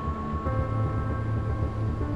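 Low, uneven rumble of a ship underway, with a few long held tones of ambient music over it.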